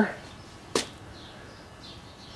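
A single sharp tap about three quarters of a second in: a work boot knocking against the plywood gusset at the foot of a wooden boat stand.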